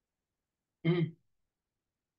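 A man clearing his throat once with a short 'hmm', lasting about a third of a second.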